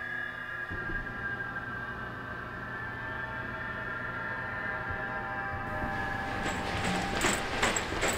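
Horror-film score: a sustained drone of several held tones over a steady low hum, slowly getting louder. A run of sharp knocks comes in near the end.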